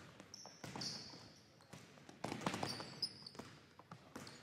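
A basketball bouncing on a hardwood gym floor as it is dribbled at speed, a few irregular thumps. Sneakers squeak on the floor twice, briefly.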